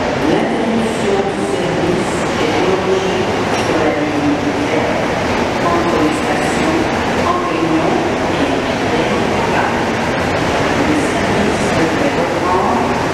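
Montreal metro MR-73 rubber-tyred train pulling into the station and slowing along the platform, its motors giving a whine that shifts in pitch over the running noise.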